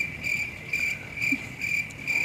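Cricket chirping: a high, steady trill that pulses at an even rate.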